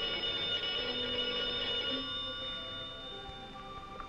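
Telephone bell ringing: one loud ring that starts suddenly and lasts about two seconds, over quieter orchestral music.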